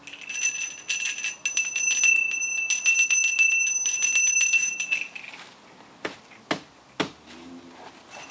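Small handbell shaken rapidly, ringing steadily for about five seconds, then stopping. Three sharp clicks follow in the last few seconds.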